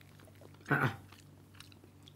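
A mouthful of soft boiled egg being chewed, mostly quiet, with one short murmured "mm" about three-quarters of a second in.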